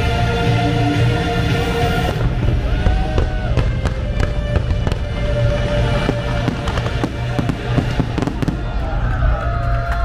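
Fireworks shells bursting and crackling over a lagoon, with many sharp pops coming thick and fast from about two seconds in. Show music with heavy bass plays underneath.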